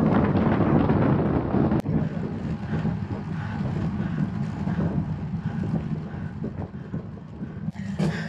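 Wind rushing over the microphone of a camera on a moving bicycle, with road noise, louder for the first couple of seconds. Sharp breaks about two seconds in and near the end, where the footage is cut.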